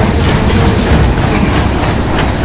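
Curved non-motorized treadmill being sprinted on: its slatted belt keeps up a low, steady rumble with clattering knocks from the footfalls.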